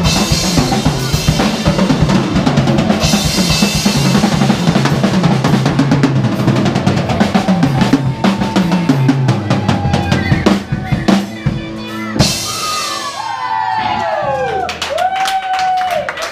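Live band playing with the drum kit to the fore: bass drum, snare and cymbal strokes over bass and guitar. The music thins out and ends on a big hit about twelve seconds in, followed by a few gliding high tones as it dies away.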